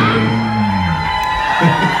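A live rock band's last chord ringing out, with the bass note sliding down and fading about a second in while a sustained high note holds on, and a crowd cheering and whooping.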